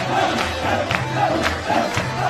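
A crowd of men shouting and chanting together over rhythmic hand claps, about two claps a second.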